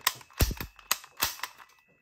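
Academy M8000 Cougar spring airsoft pistol's action being worked: a quick series of about five or six sharp clicks, each followed by a brief spring ring, dying away near the end.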